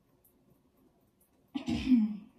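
Near silence, then a single short cough from a person about one and a half seconds in.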